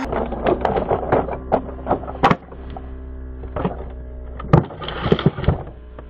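Toy dump truck clattering down a rocky slope, its wheels and body rattling on stones, then several heavy knocks as it tumbles and flips over. A steady low hum runs underneath.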